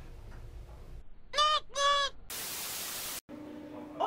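Two short, loud calls about half a second apart, followed by a burst of TV static, a hiss lasting about a second that cuts off suddenly, marking a switch of channel; a faint steady hum follows near the end.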